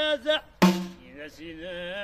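A man singing while playing a hand-held frame drum: the singing breaks off briefly, one loud drum stroke lands a little over half a second in, and his voice carries on with long bending notes.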